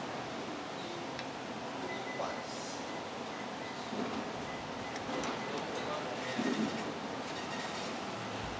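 Steady background noise of a small eatery, with a few faint soft knocks and clinks.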